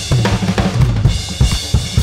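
A recorded drum-kit loop playing back in a steady groove: kick drum, snare and cymbals.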